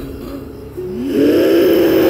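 Eerie film soundtrack: after a quieter first second, a sustained pitched tone glides upward and then holds steady.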